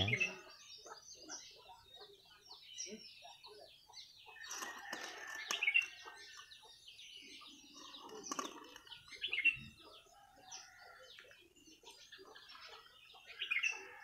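Birds chirping and calling in the background: many short, high calls throughout, with a few louder calls scattered through.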